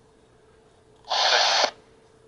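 A short burst of static hiss from an Icom IC-A20 airband radio's speaker, starting suddenly about a second in, lasting just over half a second and cutting off abruptly: the squelch opening briefly as the receiver scans its memory channels.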